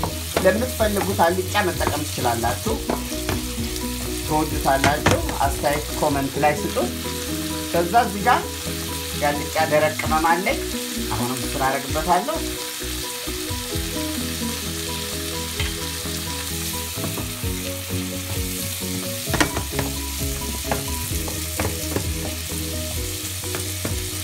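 Carrots and red onion frying in oil in a nonstick pan, sizzling steadily, while a wooden spoon stirs and scrapes them around the pan. The stirring is busiest in the first half and again briefly near the end.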